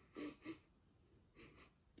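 A man sniffing at the mouth of an open drink can: two short quick sniffs, then a fainter one about a second and a half in.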